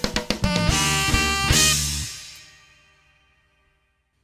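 Live smooth-jazz band, with saxophone and drum kit leading, playing the last bars of a tune: a quick run of drum hits, then a final held chord with a cymbal crash about a second and a half in that rings out and fades away.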